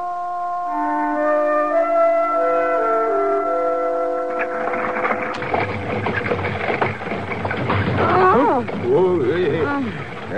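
An orchestral music bridge with long held notes. About halfway through it gives way to a radio sound effect of a moving stagecoach: a steady rough rumble with knocks and rattles. Voices come in near the end.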